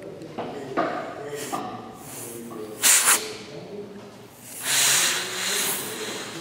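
Compressed air hissing in blasts from a blow-gun nozzle pressed onto a port of a BMW diesel oil-to-coolant heat exchanger being pressure-tested at around 5 bar. There is a brief loud blast about three seconds in and a longer one near the end.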